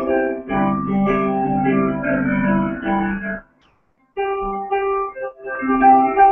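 Digital piano played in an improvisation built on the notes G, C, E and G, sustained chords with notes moving above them. The sound drops out completely for under a second a little past halfway, then the playing resumes.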